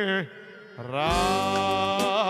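A singer holding long, melismatic notes over the music. The first note slides down and breaks off just after the start. After a short dip, a new note slides up and is held steady, with vibrato creeping back in near the end.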